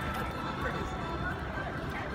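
Hoofbeats of several show horses trotting on soft dirt arena footing, under a steady murmur of crowd chatter in a large indoor arena.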